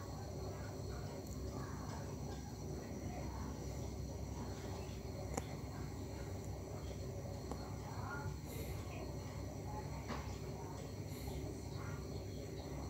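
Quiet, steady background noise: a low hum with faint, continuous high-pitched tones, and faint handling of fishing line and a swivel being tied by hand, with one small click about five seconds in.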